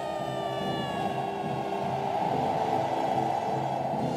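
Film soundtrack from a cavalry-charge scene: a dense, steady roar with orchestral music under it. A few faint pitched tones drift slowly downward in the first half.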